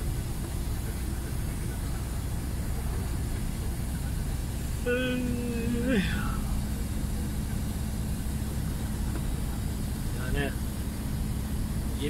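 Steady low drone of a lorry's diesel engine and tyres, heard from inside the cab while driving slowly in traffic.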